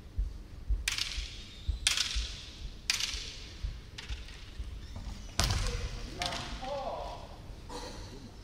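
Kendo fencers' kiai shouts: sharp cries about one, two and three seconds in, then a louder, longer drawn-out cry from about five and a half seconds, each echoing in the hall. Short low thuds of feet on the wooden floor run underneath.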